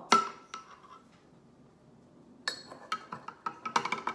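A metal spoon clinking against a glass jar: one sharp clink at the start, then, after about two seconds of quiet, quick ringing clinks as salt is stirred into the water.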